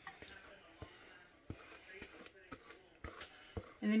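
Faint, scattered soft knocks and plops as thick cake batter is poured from a plastic mixing bowl into a glass baking dish.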